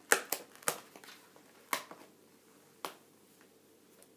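Hands handling something on a table: a handful of sharp clicks and crinkles, the loudest in the first second, the last about three seconds in.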